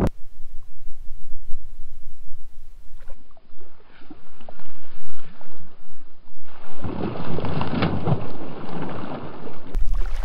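Wind buffeting the microphone over shallow water. About seven seconds in comes a louder, rough stretch of splashing as a thrown cast net's weighted lead line comes down on the water.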